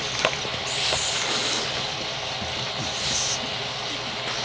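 Two bully-breed dogs tussling over a chew antler right at the microphone: a steady noisy mix of breathing, mouthing and rustling, with brief louder hissy puffs about a second in and again around three seconds in.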